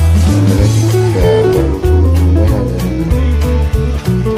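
Background music with guitar over a bass line.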